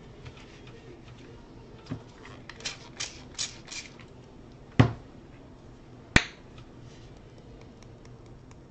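Hands working a cloth towel over watercolour paper on a tabletop: a run of four short brushing sounds, then two sharp knocks on the table, the first with a low thud.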